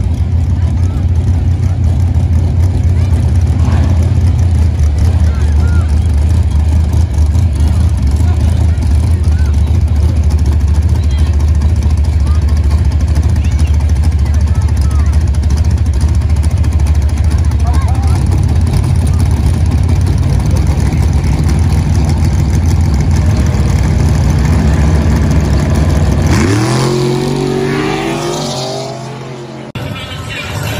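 Fourth-generation Chevrolet Camaro's V8 idling loudly with a deep, steady rumble. About 26 seconds in it launches: the revs climb sharply and the sound fades as the car pulls away.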